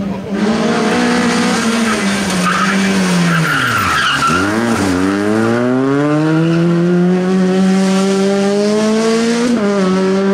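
Rally car braking into a hairpin, its engine note falling steeply while the tyres squeal and skid. It then accelerates out with a steadily rising note and an upshift near the end.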